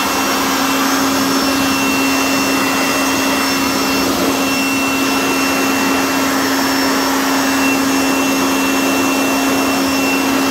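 Chemical Guys handheld electric mini leaf blower running without a break, blowing water off a freshly rinsed car wheel: a steady rush of air over a constant motor hum and whine.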